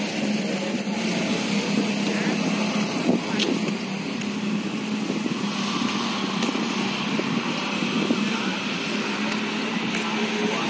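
Street ambience with road traffic: a steady wash of traffic noise with a constant low hum.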